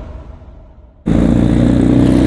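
A low rush of noise fading away, then, about a second in, a motor scooter's engine running steadily while riding, cutting in suddenly at full loudness.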